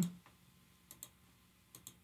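Faint computer mouse clicks: two pairs of short clicks, about a second in and again near the end, over quiet room tone.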